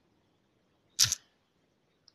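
A single short click about a second in, otherwise near silence.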